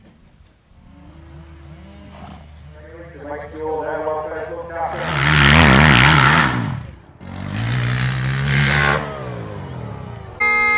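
Quad bike (ATV) engine revving hard in a stunt display, its pitch wavering up and down as the rider spins the wheels on turf. It builds from about three seconds in, is loudest around five to seven seconds, cuts off suddenly, then revs again and falls away.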